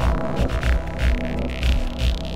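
Film soundtrack music: a low, throbbing drone with deep pulses about twice a second.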